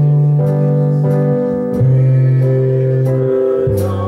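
Live church music: a keyboard playing held chords over a bass line that changes note about every one and a half seconds, with a light regular tick on top and voices singing along faintly.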